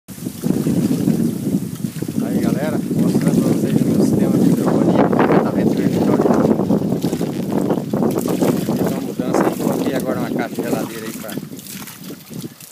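Wind buffeting the microphone in a loud, steady rumble, with indistinct voices in the background.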